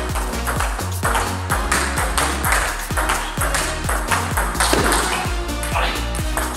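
Table tennis rally: a celluloid ball clicking back and forth between Pongfinity Sensei rackets and the table. Electronic background music with a steady beat plays over it.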